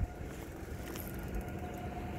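Fishing boat's engine running at idle, a steady low rumble with a faint steady whine over it.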